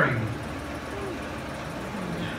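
Background noise of a large, echoing open-sided shed: the echo of a speaking voice dies away, then a low steady hum and hiss, with a faint distant voice about a second in.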